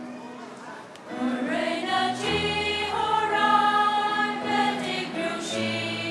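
Choral music with sustained instrumental accompaniment. It is soft at first, the voices swell in about a second in, and a deep bass note enters just after two seconds.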